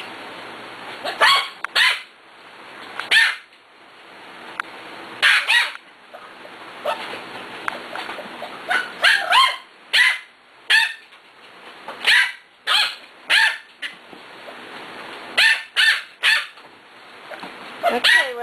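Six-week-old Pembroke Welsh Corgi puppies barking in short, high yaps, about nineteen sharp barks, often two or three close together with short pauses between.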